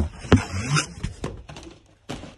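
Cardboard shoe box being handled and pulled from its cardboard shipping carton: a sharp knock, a second knock about a third of a second later, then rustling and scraping of cardboard.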